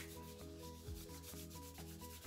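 Hands rubbing a paper wax strip between the palms to warm it before it is applied, a faint steady rubbing.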